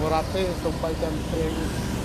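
A man speaking in Khmer over a steady low rumble.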